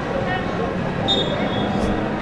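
Open-air football pitch ambience: a steady background noise with faint distant voices of players or onlookers. A faint high steady tone sounds for under a second, starting about halfway through.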